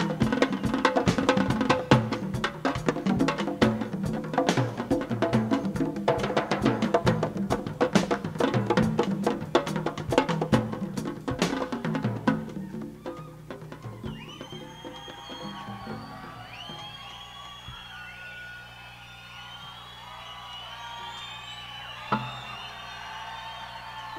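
A live Latin-rock band plays a dense percussion passage on timbales, congas and drum kit with a sharp, woody click, which stops about halfway through. After that, a concert crowd cheers and whistles over a low sustained note.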